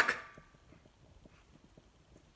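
The tail of a shouted word dying away with a short echo of a small room, then near silence: room tone with a few faint ticks.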